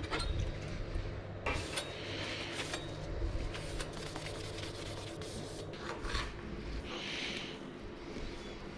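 A dish brush scrubbing a plate in a stainless-steel sink: a quick run of scratchy rubbing strokes, with a few sharp clacks of dishes.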